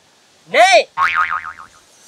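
Cartoon 'boing' comedy sound effect: a short pitched tone that rises and falls about half a second in, then a wobbling, zigzagging twang that fades out.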